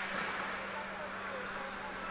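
Faint ambience of an ice hockey game in play in a rink, over a steady low hum.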